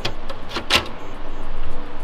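Plastic hot-pluggable fan module in an HP ProLiant DL580 G7 server being handled and pushed back into its bay. There is a click at the start and a sharper click under a second in, then a louder stretch of rubbing and handling noise near the end.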